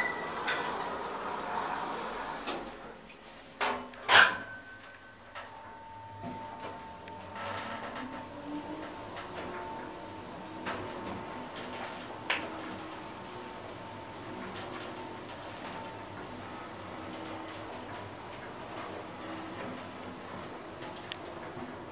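Elevator doors sliding shut with two sharp knocks about four seconds in, the second louder. The Schindler traction elevator car then travels down with a steady whine and a few faint clicks.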